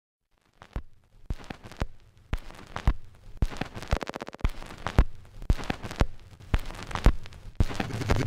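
A run of sharp cracks and pops, about two a second, starting about half a second in.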